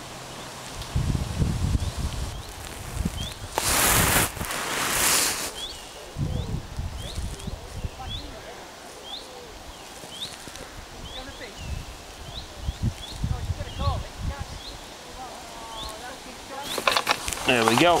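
Outdoor lakeside ambience: a small bird gives short rising chirps over and over, with low wind rumble on the microphone and two brief hissing rushes about four and five seconds in.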